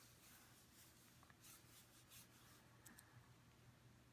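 Faint rubbing of an embossing buddy, a cloth pouch, wiped over cardstock to remove static: several soft, hissy strokes that stop about three seconds in, over a faint steady hum.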